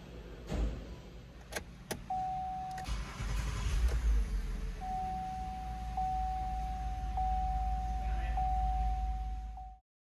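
A 2010 Chevy Traverse's V6 starts about three seconds in, after a couple of sharp clicks, and then idles steadily. A steady electronic warning tone sounds over the idle. The engine now starts because its corroded G110 ground has been cleaned.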